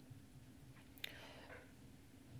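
Near silence: room tone, with one faint, brief click about a second in.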